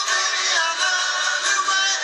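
A live band plays a soft-rock ballad, heard from the audience over the concert PA: acoustic guitars and drums under a wavering melody line.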